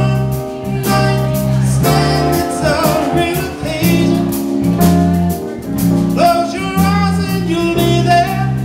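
Live jazz-rock band playing: electric keyboard, drum kit with steady cymbal strikes, and a Fender Precision electric bass holding long low notes, with a male lead vocal singing the melody over them.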